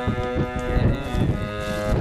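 Harmonium holding a steady chord in an instrumental break of the song, with hand-drum strokes thumping underneath.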